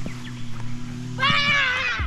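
A child's long, high-pitched shout, about a second in and lasting most of a second, over background music.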